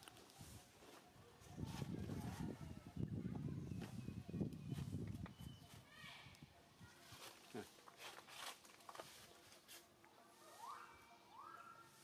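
Faint, muffled voices murmuring for a few seconds, with scattered small clicks and rustles. Two short rising chirps come near the end.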